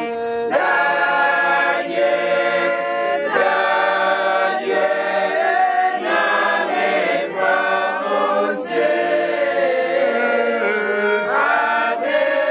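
A church choir of women singing a hymn together, several voices holding long notes that move from phrase to phrase without a break.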